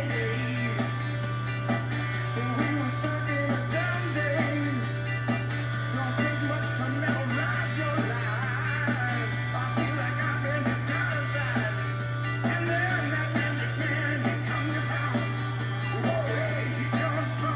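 Live rock song with a male lead vocal and backup singers over electric guitars and bass, played from a television's speakers, with a steady low hum underneath.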